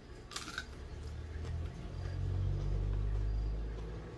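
A short crisp crunch of teeth biting into a raw white onion about half a second in, followed by a low rumble that swells and then eases off.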